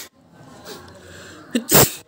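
A single sneeze near the end: a short voiced onset, then a loud hissing burst, over faint murmuring voices.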